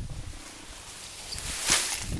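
Brief rustle of leaves and twigs from fallen leafy branches on grass, about one and a half seconds in, over a low steady rumble.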